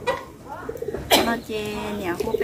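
A woman's voice speaking in short phrases with pauses between them, quieter than the talk around it.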